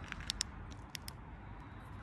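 A few faint sharp clicks from handheld flashlights being handled and switched over, a little cluster about a third of a second in and two more about a second in, over a quiet steady hiss.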